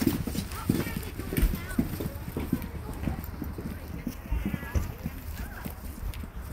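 Footsteps clomping on hard pavement, a short knock about two or three times a second, as someone walks at a steady pace. Faint voices of other people in the background.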